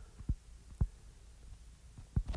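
Stylus writing on a tablet's glass screen: a few soft taps, the clearest a little under a second in, over a low steady hum.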